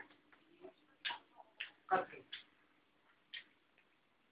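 Hands brushing across the pile of a rug: several short brushing sounds at uneven intervals, with a brief 'okay' from a man.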